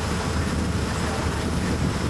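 Loud, steady rush of wind with a deep engine rumble, as heard on the deck of a moving boat.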